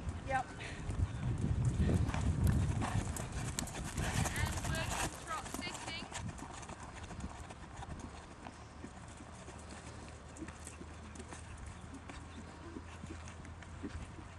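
Hoofbeats of a horse moving on a sand arena, loudest in the first few seconds as it comes close, then fainter.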